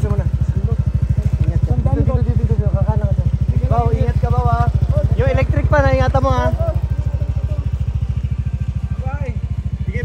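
Motorcycle engine idling close by, a steady fast low pulse, with voices talking over it for a few seconds in the middle.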